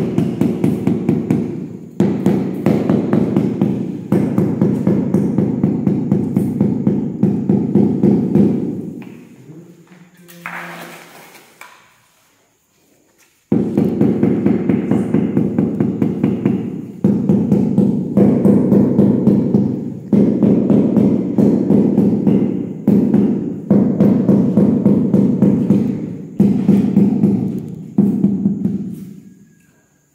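Rubber mallet rapidly tapping ceramic floor tiles to bed them into the mortar, dull knocks in quick runs of a couple of seconds with short breaks. The tapping stops for a few seconds near the middle, then resumes.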